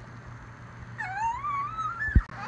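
Domestic cat meowing: one long meow starting about halfway through, rising in pitch.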